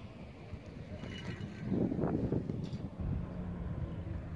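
A motor vehicle going by on the nearby road: a low engine hum with a noisy swell that peaks about two seconds in, then settles back to a steady hum.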